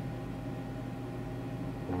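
Steady background hum with a faint hiss, and no distinct event.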